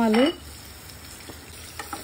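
Potato wedges sizzling steadily in a pot of hot spiced onion masala, with a couple of faint clicks near the end.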